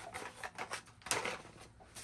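Packaged Hot Wheels die-cast cars being handled: a string of light plastic clicks and rustles, with one sharper click about a second in.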